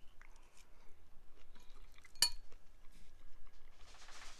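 Metal fork clinking against a ceramic bowl: scattered small clicks and one sharp, ringing clink about halfway through.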